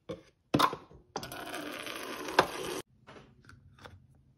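Refrigerator door water dispenser filling a plastic bottle: a couple of clicks, then water running steadily into the bottle for about a second and a half before it cuts off suddenly. A few light clicks follow as the bottle's plastic cap is handled and screwed on.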